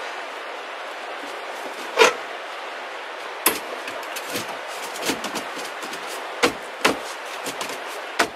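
Metal stovepipe sections clicking and knocking as they are handled and fitted back together by hand: a handful of scattered sharp knocks, the loudest about two seconds in, over a steady hiss.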